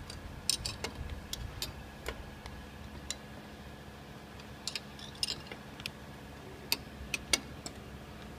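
Scattered sharp metallic clicks of a spanner working a bolt on the cutting-blade bracket of a vertical form-fill-seal packing machine as the blade is tightened in place, over a steady low hum.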